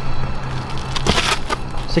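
Scuffing and scraping of shoes and hands on a rooftop ledge as someone climbs down over it, with the loudest scrapes about a second in and again near the end.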